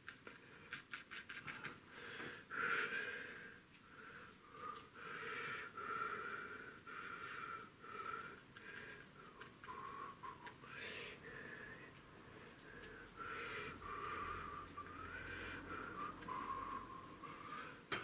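A bristle brush dabbing and scrubbing acrylic paint onto gesso-primed paper. It opens with a quick run of light taps, then gives scratchy strokes about once a second, some drawn out into a thin squeak that slides in pitch.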